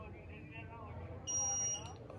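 A single high electronic beep, one steady tone lasting about half a second, starting a little past halfway, over faint voices.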